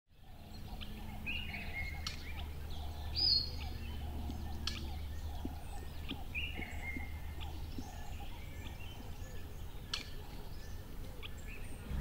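Outdoor ambience of birds chirping and calling over a low, steady rumble, with one louder high call about three seconds in.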